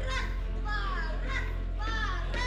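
High-pitched voices calling out and squealing in quick succession, each call sliding down in pitch, over a steady low musical drone.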